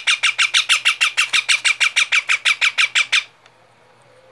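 A parakeet chick calling in a fast, even run of short harsh squawks, about eight a second, which stops abruptly a little over three seconds in.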